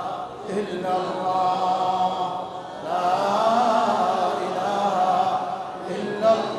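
A man's voice chanting in a drawn-out melodic tune into a microphone, with long, wavering held notes. The voice drops away briefly a little after two seconds and comes back strongly about three seconds in.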